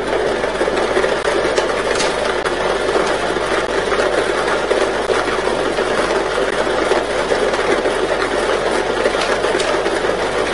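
Lottery ball draw machine running: a steady mechanical whir with the balls tumbling in its mixing chamber.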